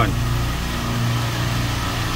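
Steady low hum of running machinery, even and unbroken.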